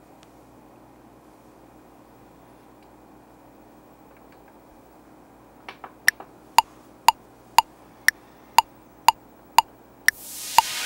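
Korg Kronos sequencer metronome clicking the count-in before recording: eight sharp clicks at 120 bpm, two a second, starting about six seconds in, the first one higher-pitched as the accented downbeat. Just before it come a few softer clicks, and before that only faint room tone.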